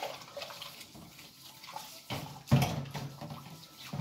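Water sloshing and splashing in a kitchen sink as pots and pans are washed by hand, with a louder stretch a little past halfway.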